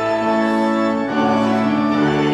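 Organ playing slow, sustained chords, moving to a new chord about a second in and again near the end.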